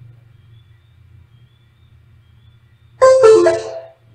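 A faint low hum, then about three seconds in a sudden, loud, short piano-like chime of a few notes that dies away within a second.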